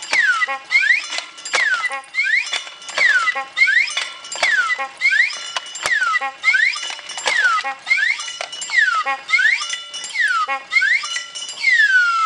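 Homemade wooden-and-metal contraption running, its swinging arm mechanism squealing once per cycle, about once a second. Each squeal falls and then rises in pitch, mixed with metallic clinks and rattles.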